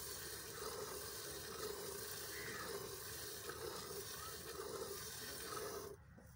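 Milk squirting by hand from a water buffalo's teats into a steel bucket of frothy milk, a steady hiss of streams striking the milk.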